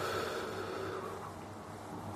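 A man's breath out, a soft noisy exhale lasting about a second, then faint room tone with a low steady hum.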